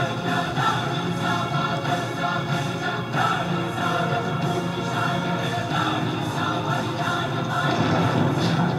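Dramatic film score with a choir singing over steady sustained orchestral music.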